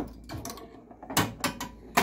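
Steel pinball knocking and clicking through the playfield of a Williams Whirlwind pinball machine: a handful of sharp clicks and knocks, the loudest a little over a second in.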